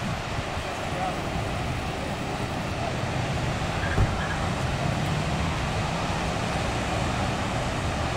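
Steady outdoor ambience by the sea: a low, even rumble with faint voices, and a single short bump about four seconds in.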